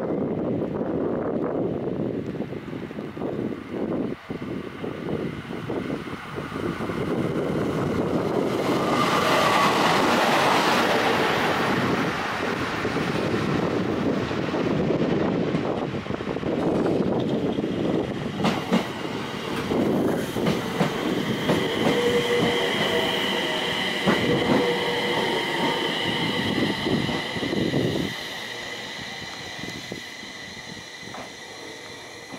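JR East 701 series electric train approaching and pulling into the station: a rail rumble that grows louder, clicks of the wheels over rail joints, then a steady high whine as it brakes. The noise drops away suddenly as it comes to a stop near the end.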